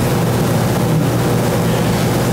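A steady low hum under an even hiss, unchanging throughout.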